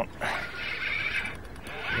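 Spinning fishing reel being wound in against a hooked fish, a steady whirring that breaks off briefly about a second and a half in.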